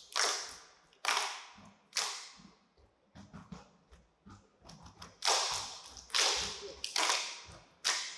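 Saman dancers clapping and slapping their bodies in unison, sharp strikes landing about once a second and ringing briefly in the hall. Softer, scattered taps come in the middle before four loud strikes close it out.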